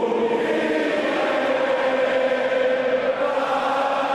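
Many voices chanting in unison, holding long steady notes.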